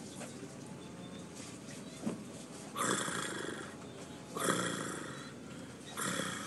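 A person snoring: two drawn-out, breathy snores about a second and a half apart, with a third beginning at the very end.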